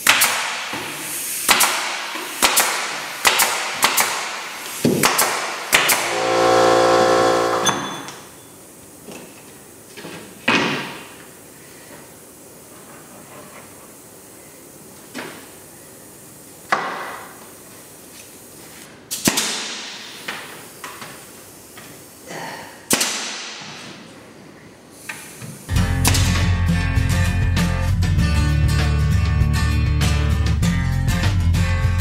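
Pneumatic nailer firing fasteners into a plywood floor substrate, a rapid run of shots about one every 0.7 seconds for the first six seconds, then a brief hum. After that come scattered knocks of wood flooring pieces being set in place, and guitar music comes in near the end.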